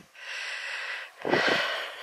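A person breathing close to the microphone while walking: two long breaths of about a second each, with a short low thump between them.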